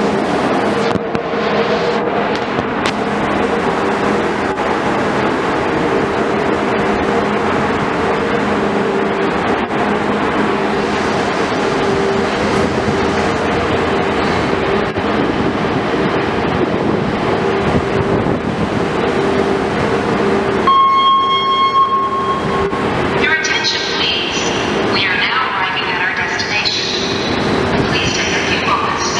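Steady drone of the ferry's engines and machinery heard on the enclosed car deck: a constant rumble with a couple of low steady hum tones. About three-quarters of the way through, the drone drops away abruptly and a steady high tone sounds for about two seconds. Then high, wavering voice-like sounds take over.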